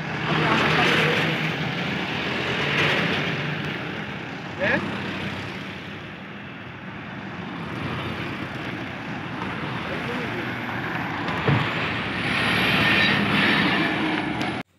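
A convoy of pickup trucks and small cars driving past one after another. Their engines and tyres run steadily, swelling louder each time a vehicle passes close.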